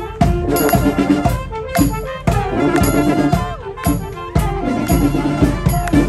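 Military marching band playing a march while marching: trumpets, trombones, saxophones and sousaphone over a steady drum beat.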